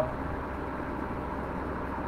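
Steady background hum and hiss: room tone in a pause between spoken words.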